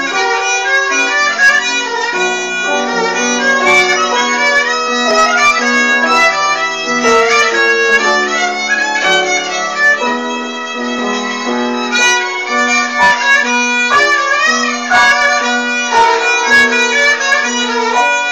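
Kamancha, the Azerbaijani bowed spike fiddle, playing a solo melody, with some notes wavering and gliding in ornament.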